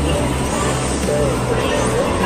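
Electronic arcade game music playing steadily, with a low held bass and a simple melody, over background voices.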